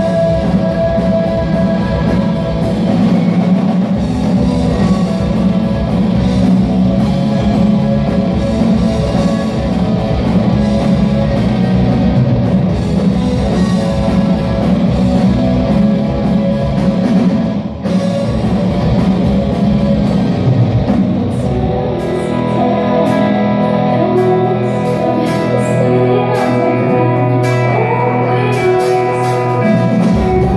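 A live rock band playing an instrumental passage on drum kit, electric guitar and electric bass. The music breaks off for a moment about two-thirds of the way through, and in the last several seconds the deep low end drops away, leaving a lighter sound.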